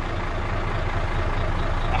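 Mercedes-Benz Actros truck's diesel engine running steadily at low revs as the truck creeps backwards.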